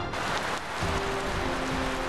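Heavy, drenching rain falling. A steady music bed of sustained tones comes in under it about a second in.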